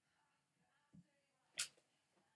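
Near silence: room tone, broken by a soft low thump about a second in and a short sharp noise half a second later.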